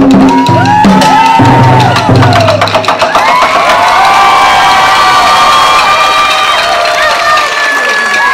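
Taiko drums struck hard in a closing run of strokes that stops about three seconds in, followed by an audience cheering and shouting.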